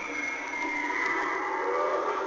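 Lurching vampire Halloween animatronic playing its sound effect through its built-in speaker: a long, wavering, slowly falling high-pitched sound.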